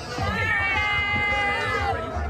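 A long, high-pitched call or cheer from a voice in the crowd, sliding up and then held on one steady note for over a second, over crowd noise.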